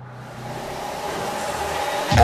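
Steady crowd noise in a gymnasium, fading in and growing louder, with a faint low hum under it.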